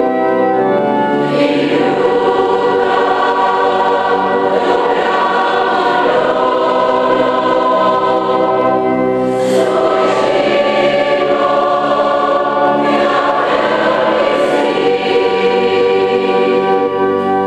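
A massed choir of about 200 voices singing a sacred song together in long held chords that change every few seconds.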